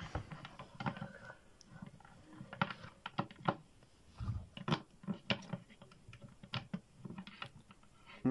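Plastic action figures being handled, with irregular light clicks and taps as they knock against a hard surface.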